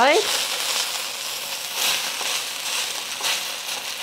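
Rice vermicelli noodles frying in hot oil in a steel wok: a steady sizzle with a few louder crackles, the noodles toasting on the underside.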